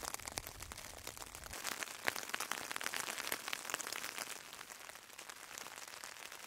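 Light rain falling on a tent, heard from inside as many small scattered drop hits.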